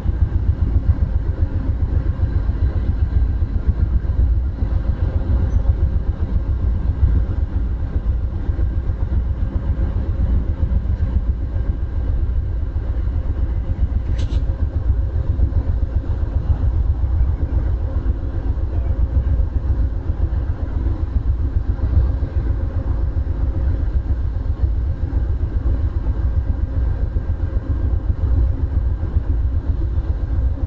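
Steady low rumble and hum of a standing Amtrak passenger train with its diesel locomotives idling. There is one brief sharp click about 14 seconds in.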